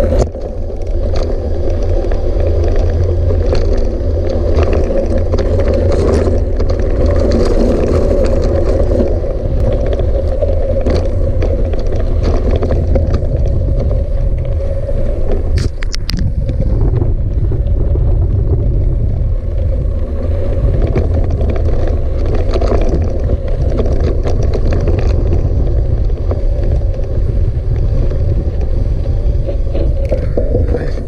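Steady wind rumble on the camera microphone over a hardtail mountain bike rolling down a loose gravel trail, with tyre crunch and scattered knocks and rattles from the bike over rocks, the sharpest about halfway through.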